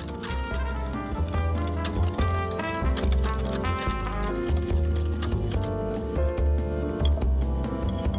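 Background music: a light melody of held notes over a steadily pulsing bass beat.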